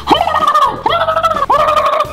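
Three short, high-pitched yelping cries in quick succession, each jumping up in pitch, held briefly, then dropping.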